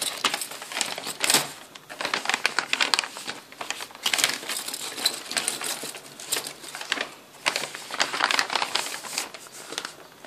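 Sheets of printed handmade paper rustling and crinkling as hands handle and fold a paper gift bag, in irregular crackles loudest about a second in.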